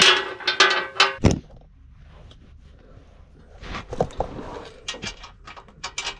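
Metal clinks and knocks of hand tools on the steel bumper bracket bolts under a Suzuki Carry mini truck, as the bumper mounting hardware is tightened. A cluster of sharp knocks comes in the first second or so, then irregular light clicks from the middle on.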